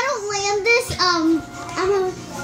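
A child singing a short wordless tune in held, gliding notes, with a brief knock about a second in.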